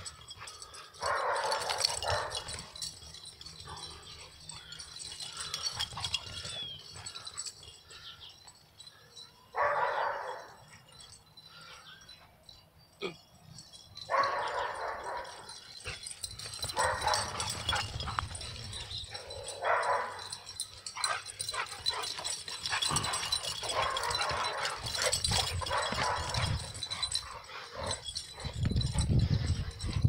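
Pit bulls play-fighting, giving short bursts of barking every few seconds, with a deeper rumble just before the end.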